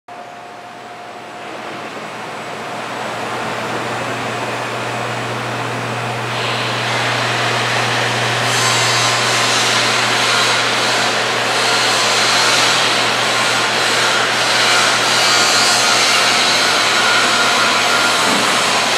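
Electric hydraulic power unit of a scissor lift running as the platform is raised: a steady motor-and-pump hum with a hiss over it, growing louder over the first few seconds and turning brighter about six and eight seconds in.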